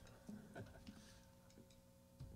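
Near silence: studio room tone with a faint steady electrical hum and a few soft clicks in the first second and a half.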